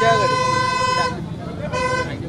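A steady, pitched horn blast lasting about a second, then a shorter blast near the end.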